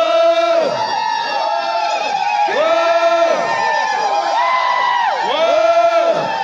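A large crowd of men chanting together in unison: a series of long calls, each gliding up, held, then dropping away, about one every second. This is the traditional group chant of Naga men in procession.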